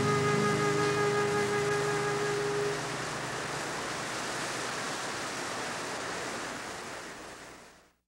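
Closing music with held notes ends about three seconds in, leaving the steady rush of river water pouring over rapids, which fades out at the very end.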